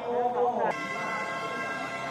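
A brief voice, then a steady pitched tone rich in overtones, like a horn or an engine held at constant revs, that starts abruptly under a second in and holds level for about a second and a half.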